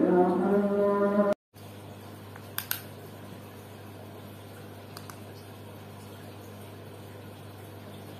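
A drawn-out voice breaks off sharply just over a second in, giving way to a steady low hum and faint bubbling hiss from aquarium air pumps and filters, with a couple of small clicks about two and a half seconds in.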